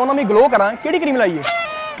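Talking, then near the end a short honk: a steady, buzzy tone lasting about half a second.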